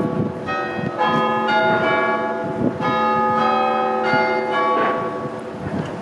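Tower bells ringing: a run of overlapping strikes at several different pitches, each note ringing on as the next is struck, easing off near the end, with wind or traffic rumble underneath.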